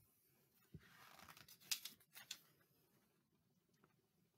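Near silence in a small room, broken by a few faint rustles and taps from a picture book being handled in the first half.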